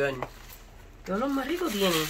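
Voices: a spoken word ends, a short lull follows, then about a second in comes a drawn-out vocal exclamation.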